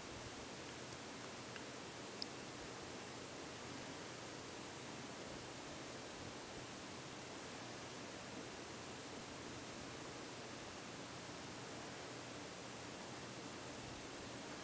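Faint, steady hiss with one small click about two seconds in; the cloth wiping the shotgun's metal is not heard distinctly above it.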